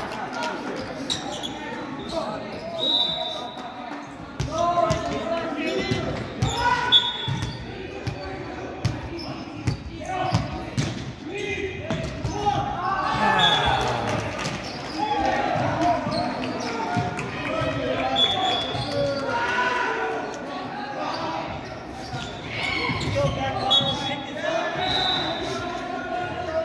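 Volleyball being hit and bouncing on a hardwood gym floor, many short sharp knocks scattered throughout, over players' shouts and chatter in a large hall.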